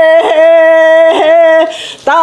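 A woman singing unaccompanied in the Sakha toyuk style, holding long steady notes that are broken twice by brief throaty catches. Near the end the note falls away for a breath.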